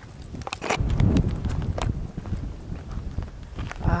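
Quick footsteps on a dirt path with the handheld camera jolting at each step, heard as irregular knocks and low rumbles.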